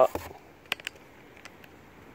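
Two sharp clicks a little under a second in, close together, as a round snuff tin is set down on cardboard parts boxes; otherwise only faint background.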